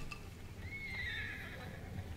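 A horse whinnying on a TV episode's soundtrack, played low: one high call that rises and then falls, starting about half a second in and lasting about a second.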